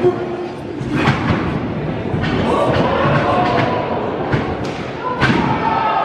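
Wrestlers' bodies thudding onto a wrestling-ring mat: one thud right at the start, two about a second in, and a few more near the end, over a crowd's shouting voices.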